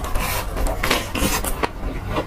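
Close-miked crunching of a crispy breaded fried chicken cutlet being bitten and chewed: a quick, irregular run of sharp crunches, several a second.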